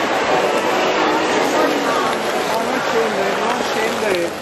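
Indistinct chatter of many people talking at once over a steady background hiss, with no single voice standing out.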